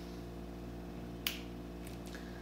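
A single short, sharp click from an unloaded semi-automatic pistol during dry-fire trigger practice, about a second in, over a faint steady hum.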